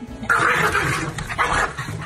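Two corgis snarling and growling at each other as they scuffle, a loud, harsh sound that starts about a quarter second in and surges again about a second and a half in.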